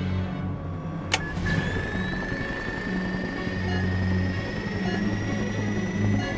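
Film score with low, held notes; about a second in a sharp click, then a high electronic whine that climbs slowly in pitch as the button-operated device on the control panel powers up.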